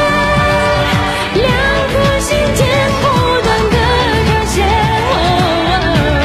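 A woman singing a pop song into a microphone over backing music with a steady beat. She holds one long note for about the first second, then sings a melody with vibrato.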